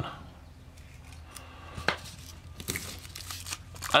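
Plastic shrink-wrap on a card deck being slit with a hobby knife and peeled off, with a single sharp tick about two seconds in and soft crinkling and crackling after.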